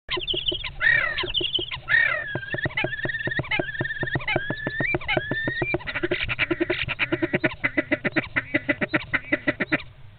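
Two European starlings fighting inside a wooden nest box: harsh whistled calls sliding up and down, mixed with knocks. About six seconds in, the calls give way to a fast run of sharp knocks, about seven a second, which stops abruptly just before the end.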